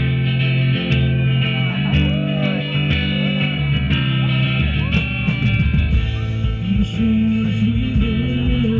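Live rock band playing loudly: electric guitars over bass guitar and drums, with bending guitar notes in the middle and drum strokes growing denser near the end.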